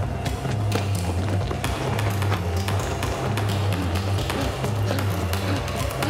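Film score with a steady, pulsing bass line, over the taps of running footsteps during a chase through a mall.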